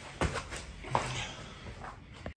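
A few soft footsteps and body movement as a person walks across the floor.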